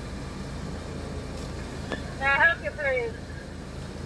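Car engine idling, a steady low rumble, with a brief hesitant 'uh' spoken about two seconds in.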